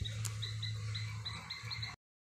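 An animal calling: a run of short, high chirps, about four a second and coming faster near the end, over a low steady hum.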